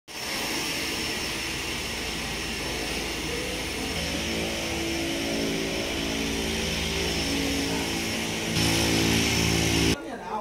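Small propeller aircraft's engine running steadily, a low droning hum with a high whine and hiss over it. It grows louder about eight and a half seconds in.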